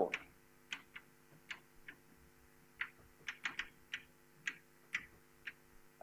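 Chalk writing on a blackboard: a string of irregular short taps and scrapes as the letters go down, over a faint steady room hum.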